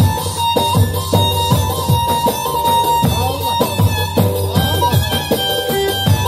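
Live Turkish folk dance music from a band playing over loudspeakers: keyboard and bağlama with a melody line over a steady, regular drum beat.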